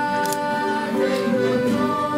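Accordion playing a folk tune in held, sustained notes, the pitch changing every second or so.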